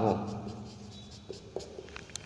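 Marker pen writing on a whiteboard: faint, scattered scratching strokes as the words are written.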